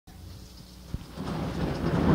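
A low rumble with a single sharp click about a second in, then a swelling noisy rumble that grows louder toward the end.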